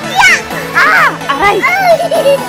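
Young children's excited, high-pitched voices, a few short squeals and calls, over background music.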